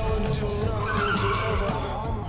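Car tyres screeching in one long, held squeal.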